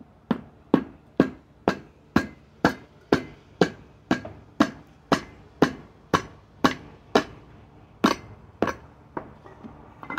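Hand hammer striking a metal tool held against the rim of a small zero-turn mower wheel, about two blows a second, working the tire bead over the rim. The blows break off briefly near the three-quarter mark, then two more follow and a lighter one near the end.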